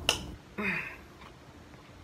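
Mouth sounds after a sip of wine: a sharp lip smack at the start, then a brief breathy 'mm' about half a second in.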